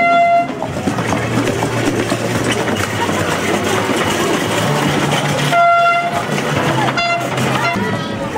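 A horn sounding a single held, buzzy note in toots: one ending about half a second in, another lasting about half a second around six seconds in, and a short one about a second later, over street crowd chatter.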